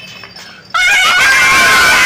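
After a quiet start, a loud edited-in meme sound clip of high-pitched wailing cuts in suddenly about three-quarters of a second in and holds at a steady level.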